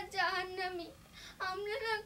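A young girl's voice in two long, wavering, sing-song cries: a staged tearful wail.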